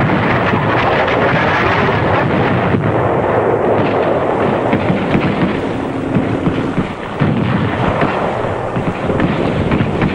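Dense, continuous battle noise: a steady rumble of heavy bombardment with many quick shell bursts and shots over it, dipping briefly about seven seconds in.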